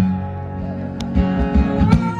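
Solo acoustic guitar strummed, its chords ringing, with a quick run of strums in the second half.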